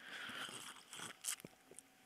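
Faint mouth sounds of a man taking a drink: a soft sip and swallow, with a few small clicks and a light knock about a second and a quarter in.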